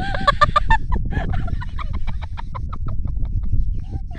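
A woman laughing hard, a long run of short rapid laughs several a second that fades out near the end.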